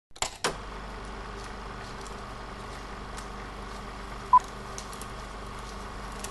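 Old-film projector sound effect: two clicks at the start, then a steady low hum and hiss with scattered crackle ticks like a worn film soundtrack, and a single short high beep about four seconds in, like the sync beep on a film leader.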